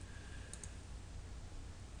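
A faint computer keyboard keystroke about half a second in, over a low steady hum.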